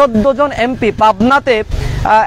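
A man speaking Bengali into press microphones, continuous speech only, with a faint low background rumble underneath.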